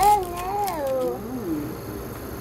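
A toddler's high, drawn-out wordless whine that starts loud, wavers in pitch, then dips and rises again before stopping after about a second and a half.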